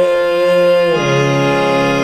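Electronic keyboard in a harmonium-like reed-organ voice holding a single note; about a second in the note changes and lower notes join beneath it as a sustained chord.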